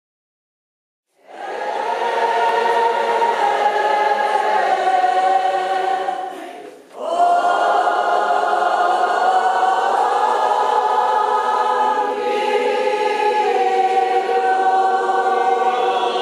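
A group of voices singing a slow Catholic Mass hymn together, starting about a second in, with a short break between phrases about seven seconds in.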